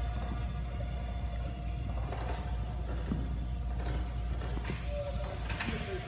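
A Finch robot's small geared wheel motors whirring as it moves, over a steady low hum.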